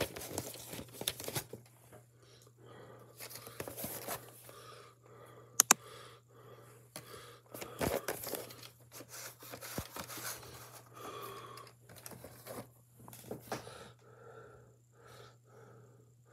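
A VHS cassette being handled and slid out of its cardboard slipcase: irregular rustling and scraping of cardboard and plastic, with a sharp click about six seconds in and a few softer knocks.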